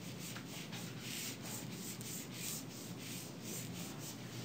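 Repeated scratchy rubbing strokes on a classroom board, several a second and fairly faint: a marker or eraser being worked across the board.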